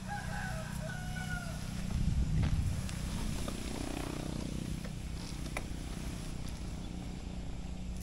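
A rooster crowing once at the start, one drawn-out call, over a steady low rumble that swells louder about two seconds in.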